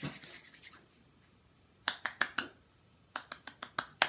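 Finger snaps: four sharp snaps about two seconds in, then a quicker run of about seven near the end.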